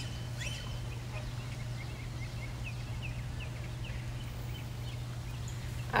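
Faint short bird chirps repeating every fraction of a second over a steady low hum.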